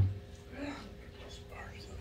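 A man's spoken word trails off right at the start, then a pause holding only a steady low hum and faint, soft voice sounds.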